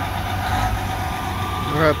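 Diesel engine of a parked tour coach idling with a steady low rumble and a constant hum above it.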